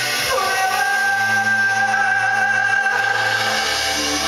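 Live rock band in an arena playing a slow ballad: a male singer holding long notes over sustained keyboard chords, with a low bass note that steps down near the end.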